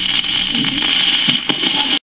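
Surface hiss and crackle of a 1943 home-recorded record playing on a Hamilton Electronics record player, with a few sharp clicks; the sound cuts off suddenly at the end.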